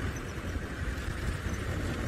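Open safari vehicle driving along a dirt track: a steady low rumble of engine and road noise.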